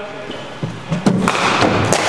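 Cricket ball pitching on the net's artificial matting and meeting the bat: two knocks about half a second apart, the second sharper and louder, with a noisy echo lingering after them.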